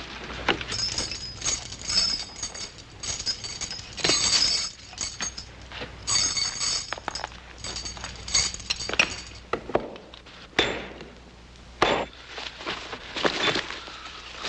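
Metal chisel striking and prying at a metal box: irregular clinks and clanks with a ringing metallic edge, a few blows louder than the rest.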